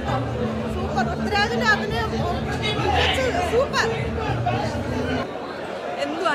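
A woman talking over background chatter and music with steady low notes in a large public hall; the music cuts off about five seconds in.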